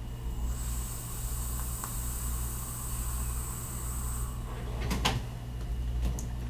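A long draw on a sub-ohm e-cigarette with an Orchid V6 atomizer: the coil sizzles with a steady high hiss of air pulled through the tight draw for about four seconds. The hiss stops, and a short breath out of the vapor follows about a second later.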